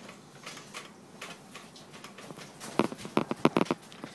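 Rummaging for an eyeliner among makeup things: light rustling and small clicks, then a quick run of sharp clacks a little under three seconds in.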